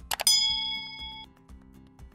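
A couple of quick mouse-click sound effects followed by a bright notification-bell ding that rings for about a second and cuts off suddenly: the sound effect of a subscribe-button and bell animation.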